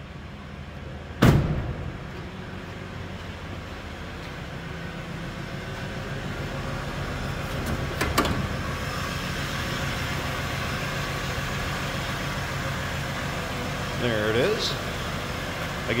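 Cadillac Fleetwood's 5.7-litre V8 idling steadily, louder once the hood is reached. A sharp knock about a second in as the hood release is pulled, and a smaller click about eight seconds in at the hood latch.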